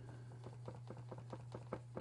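Faint, quick dabbing and tapping of a paintbrush working blue acrylic paint and gesso together on a plastic palette, about seven light ticks a second, over a low steady hum.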